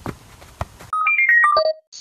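Two touches of a football on the foot during freestyle juggling. About a second in, a short electronic jingle of clear notes falling in pitch, like a ringtone, cuts in and is the loudest sound.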